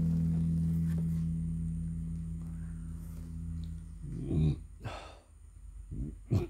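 A guitar chord left ringing, its low notes slowly dying away over about four seconds. Then, about four seconds in, a person's two short breathy vocal sounds, like sighs.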